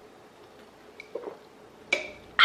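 A small juice-shot bottle being drunk from: a couple of faint gulps about a second in, then a sharp click with a brief ring near the end as the bottle is handled.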